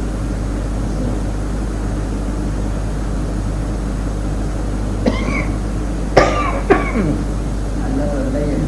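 A person coughing three short times, about five to seven seconds in, the middle cough the loudest, over a steady low hum and hiss.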